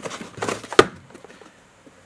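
A cardboard parts box being picked up and handled, with rustling and a sharp tap about three-quarters of a second in; the handling stops after about a second.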